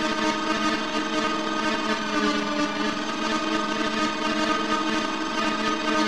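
Dark experimental electronic music: a dense, sustained drone of synthesized orchestral strings, many held tones layered over a noisy hiss, with no beat.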